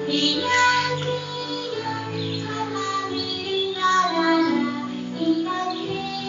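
Music: a song sung by children's voices over instrumental accompaniment, with held notes that change pitch every second or so.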